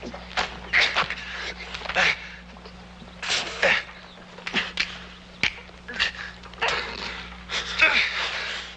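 A scuffle: sharp knocks from blows mixed with short grunts and heavy breaths, in bursts every second or so.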